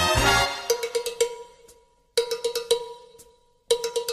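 Cha-cha-chá dance music in which the full band drops out just after the start, leaving a bare cowbell pattern: short runs of sharp strikes with brief near-silent gaps between them.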